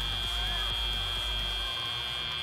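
Arena end-of-match buzzer sounding one steady, high-pitched tone, signalling that the match clock has run out.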